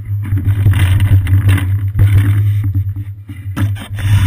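Loud, steady low rumble with wind noise from a seat-mounted GoPro camera on a moving bicycle: road and frame vibration carried through the mount, with a brief dip about three and a half seconds in.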